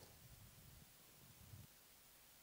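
Near silence, with only faint low background noise.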